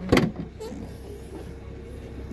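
BMW 325i saloon boot lid latch releasing with one sharp clunk a split second in, then the lid lifting open.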